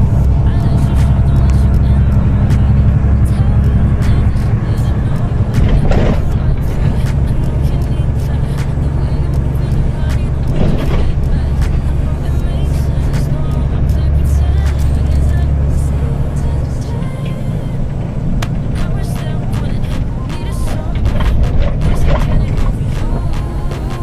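Music playing over the steady running of a heavy truck's engine, heard from inside the cab while driving.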